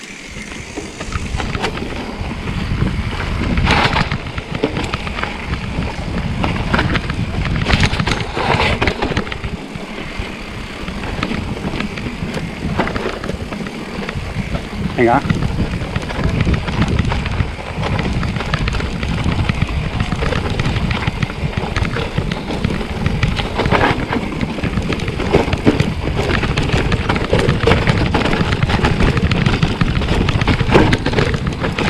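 Mountain bike descending a rough dirt singletrack: a continuous low rumble of tyres on dirt with frame and chain rattle and frequent sharp knocks over bumps and roots.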